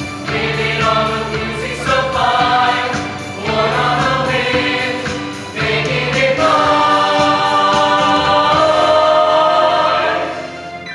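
Mixed-voice show choir singing in harmony, phrase by phrase, then swelling into one long held chord over the last three seconds or so that breaks off right at the end.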